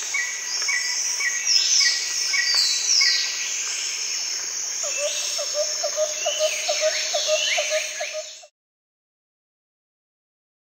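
Chirping and twittering calls, many short high falling chirps over a row of evenly spaced ticks, joined about halfway by a faster pulsing chirp in a lower pitch; it all cuts off suddenly near the end.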